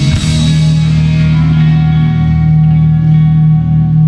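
Heavy rock band ending on one long held chord: distorted electric guitars and bass ring on unchanged after the drums stop a moment in, while the cymbal wash fades away.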